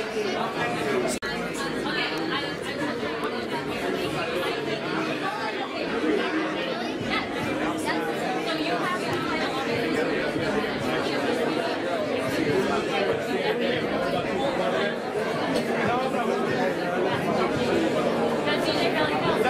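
Background chatter of many people talking at once in a large, echoing hall, steady throughout.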